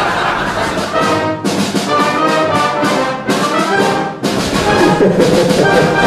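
Brass band playing: held notes and moving lines, with short breaks between phrases.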